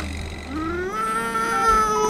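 A young girl crying: one long, drawn-out wail that starts about half a second in and holds a steady pitch.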